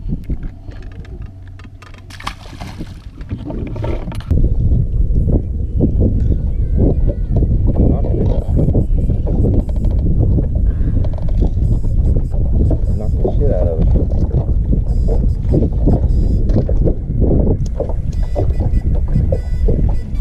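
Wind buffeting the microphone: a loud, low, irregular rumble that sets in abruptly about four seconds in, with water lapping against the hull of a small fishing boat beneath it.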